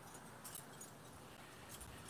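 Near silence: faint background hiss with a few soft clicks.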